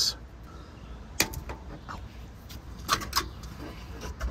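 Plastic multi-pin wiring harness connector on the Ram TRX's front bumper being unlatched and pulled apart: one sharp click about a second in as it releases, then a few softer clicks near the end.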